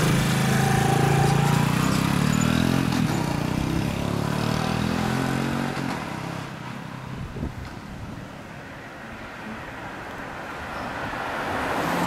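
Custom 75cc Honda Super Cub, a four-stroke single with a Takegawa exhaust, revving as it pulls away, its pitch climbing in steps through the gears. About six seconds in it fades as it rides off.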